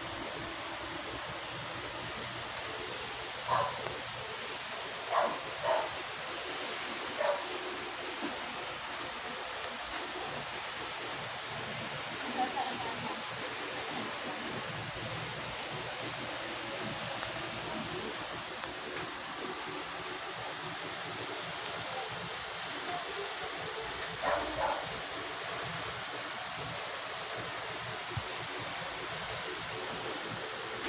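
Steady background hiss broken by short single barks, four in quick succession a few seconds in and a pair later on.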